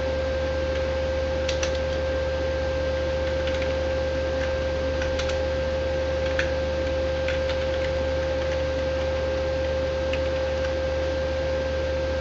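Scattered, irregular computer keyboard keystrokes over a loud, steady electrical hum with a constant whining tone.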